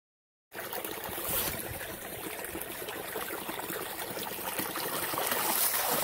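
Water jetting from the open end of a black plastic supply pipe and splashing into a burn, while the pipe is being scoured clear of peat. It starts about half a second in and slowly grows louder.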